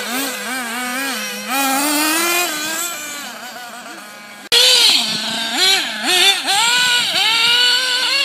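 Small nitro engine of an RC off-road buggy revving, its pitch rising and falling over and over as the throttle is worked. It fades about halfway through, then cuts in loud again.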